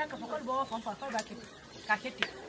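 Chicken clucking: a quick run of short calls in the first second, then a short sharp call near the end.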